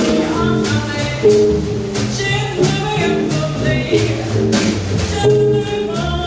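Live band music from an improvised jam: low bass notes move under higher melodic lines, with a steady beat.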